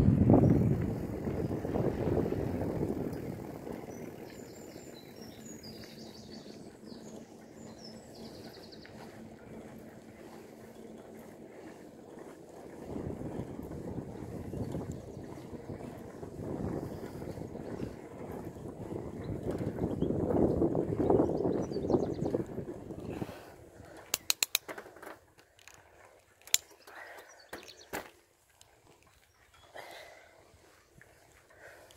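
Bicycle ride recorded on a handheld camera: low wind buffeting and tyre rolling noise that swells and eases, loudest at the start and again through the middle. Faint bird chirps a few seconds in. Near the end the rumble drops away and a few sharp clicks are heard.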